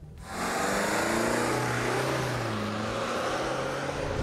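Land Rover Defender 240d's 2.0-litre four-cylinder Ingenium twin-turbo diesel pulling hard under full-throttle acceleration in a 0-100 km/h run, the engine sound starting suddenly just after the start and holding strong.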